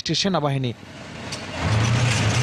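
A voice ends under a second in; then a steady rushing noise builds, and a low, even engine hum joins it about a second and a half in, like a motor vehicle running.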